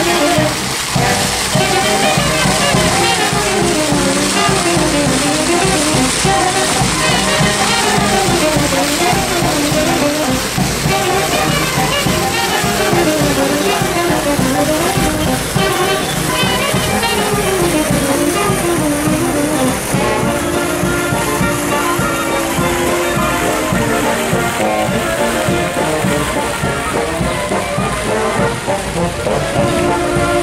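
A brass band of saxophones, trumpets and low brass playing a melody in the open air over a steady bass line. The tune moves up and down, then changes to long held chords about two-thirds of the way through.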